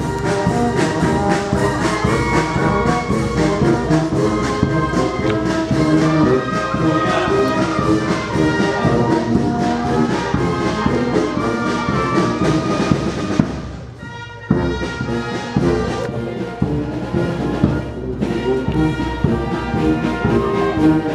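Brass band playing with trombones and trumpets; the music dips briefly about two thirds of the way through, then carries on.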